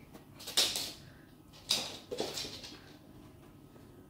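A black Labrador puppy breathing hard in excitement: two short noisy huffs about a second apart.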